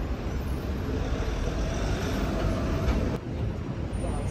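Street traffic noise with a vehicle engine running close by, its tone rising slightly mid-way, and a brief drop in the sound about three seconds in.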